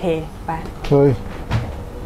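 Lower compartment of an Electrolux Ultimate Taste 300 refrigerator pulled open, with one short clack about one and a half seconds in.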